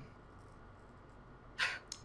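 Quiet room tone over a voice-call microphone, broken near the end by a short, breathy burst of noise from a person at the mic, with a smaller one just after.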